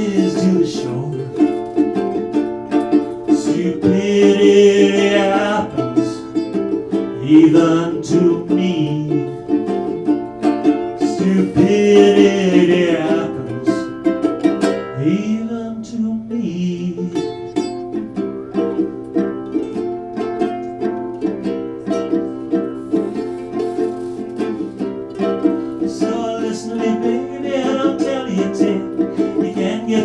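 Ukuleles strumming chords in an instrumental passage of a folk-style song, with a few short melody phrases rising above the strumming about four, seven and twelve seconds in.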